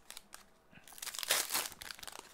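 A hockey card pack's wrapper crinkling and crackling as it is torn open, loudest about a second and a half in.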